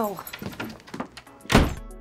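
A door slams shut with one heavy thud about one and a half seconds in.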